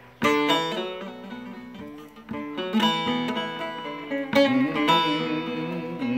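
Bağlama (Turkish long-necked saz) played solo: after a brief hush, a hard strummed chord about a quarter second in, then runs of plucked melody notes, with more hard strums about two seconds in and again past four seconds.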